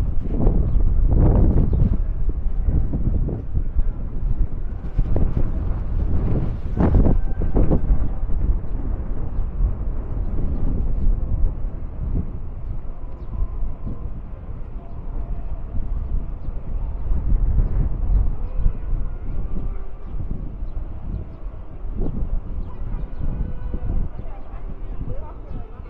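Wind buffeting the microphone in uneven gusts, the strongest in the first few seconds, over outdoor street ambience. Faint voices of passers-by near the end.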